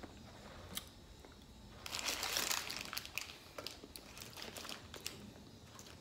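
Paper burger wrapper crinkling as it is handled. The crinkling is loudest for about a second starting around two seconds in, then goes on as small scattered rustles and clicks.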